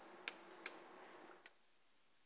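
A few faint, sharp, irregular clicks of chalk striking a blackboard as an equation is written, the last about one and a half seconds in.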